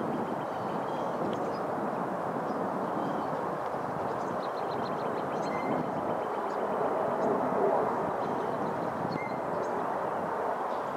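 Steady rumble of distant traffic, with a few faint high chirps on top, including a quick run of ticks about halfway through.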